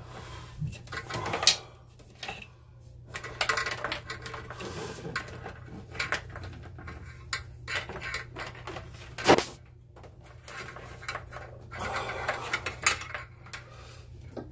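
Hands working a cable through a bundle of heavy wiring: scattered clicks, knocks and rustling, with one sharp knock about nine seconds in. A steady low hum sits underneath.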